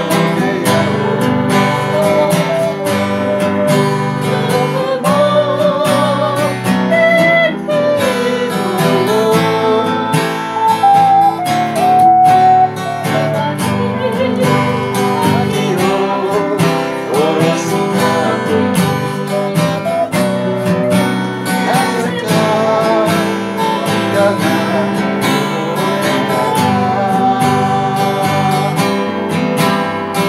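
Small group of voices singing a song together, accompanied by a strummed acoustic guitar.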